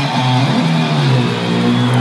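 Rock music with electric guitar and bass, moving into long held notes in the second half.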